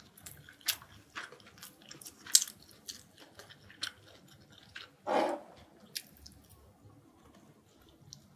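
Close-miked chewing with the mouth closed: irregular soft wet clicks and smacks, one sharper click about two and a half seconds in, and a longer, louder burst just after five seconds.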